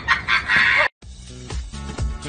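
Loud, rapid animal calls that stop abruptly a little under a second in. After a moment's silence, music with a beat starts.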